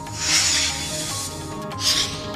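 A news-bulletin transition 'whoosh' sound effect over a steady background music bed: a swoosh lasting about a second, then a second, shorter swoosh near the end.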